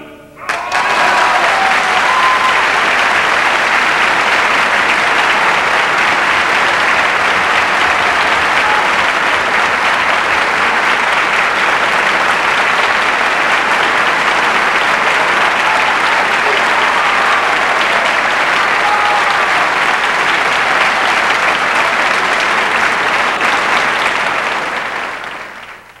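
Large concert-hall audience applauding: the applause breaks out about half a second after the singing stops, holds steady and loud, and fades away near the end, with a few voices calling out over it.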